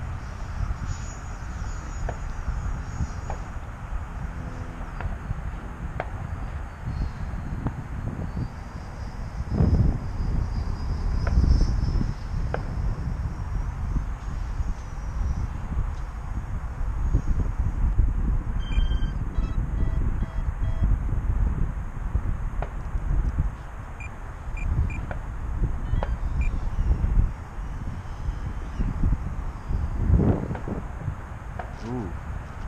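Gusty wind buffeting the microphone, loudest in surges about ten to twelve seconds in. Faint higher sounds show through it: a thin whine from about eight to thirteen seconds in, and a short run of small beeps around nineteen to twenty-one seconds in.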